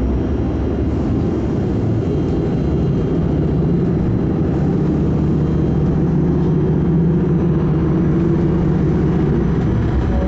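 Inside a city bus on the move: a steady low engine and road rumble, growing a little louder from about the middle as the bus picks up speed on a straight stretch.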